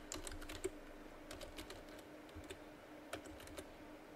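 Faint typing on a computer keyboard: a steady run of light, irregularly spaced key clicks.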